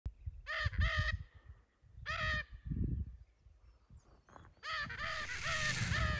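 Lear's macaws calling with short, harsh squawks: two in quick succession, a single one, then a run of four, over low wind rumble. A rising whoosh of noise builds near the end.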